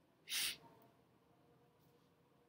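A single short burst of hissy noise, about a third of a second long, shortly after the start, over faint room tone.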